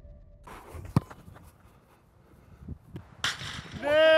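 A single sharp thump of a football being struck hard about a second in, followed by quiet outdoor air. Near the end a man's voice cuts in with a disappointed 'no'.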